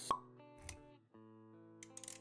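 Intro jingle music with held notes, with a short pop sound effect just after the start and a softer low thump a little over half a second later.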